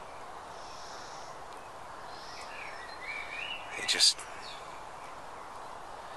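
Distant motorway traffic heard as a constant, steady drone, with a few faint bird calls about two to three seconds in.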